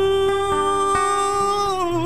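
Live Argentine folk band playing a zamba: strummed acoustic guitar and drum beats under one long held melody note that bends near the end.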